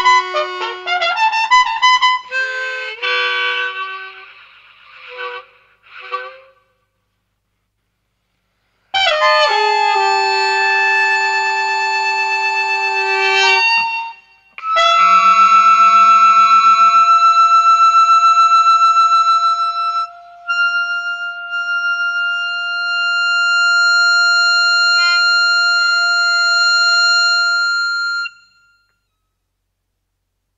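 Trumpet in an improvised duo, playing short phrases that fade out, then, after a silence of a couple of seconds, long sustained notes. The last high note is held for over ten seconds and stops near the end.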